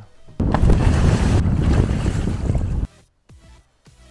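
A loud rushing noise lasting about two and a half seconds that cuts off suddenly. It is followed by faint electronic music with a beat.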